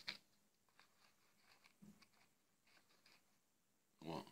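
Near silence, with a few faint clicks and soft taps from a smartphone in a silicone case being handled and propped up.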